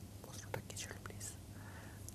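Faint breathing and a few small mouth clicks from a man pausing between sentences, over a low steady hum.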